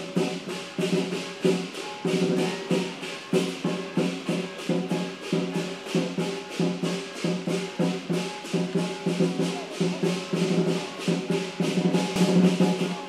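Live lion dance percussion: cymbals crashing in a steady beat of about three or four strokes a second over a drum and ringing gong.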